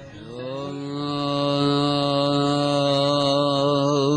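A man's voice chanting one long, steady held note of a Sufi devotional chant. The note glides up slightly as it begins.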